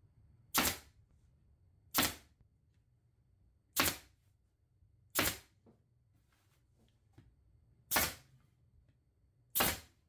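Pneumatic upholstery staple gun firing staples one at a time to fasten a vinyl seat cover: six sharp shots, about one every one and a half seconds, with a longer pause near the middle.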